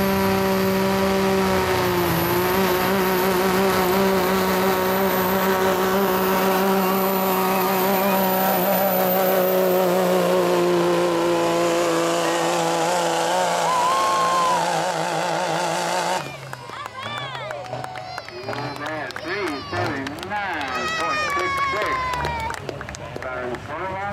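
Diesel pickup truck pulling a weight-transfer sled at full throttle, its engine running steadily with a high whistle from the turbocharger over it. The engine note sags slightly and then cuts off abruptly about two-thirds of the way through, as the pull ends. A voice over a loudspeaker follows.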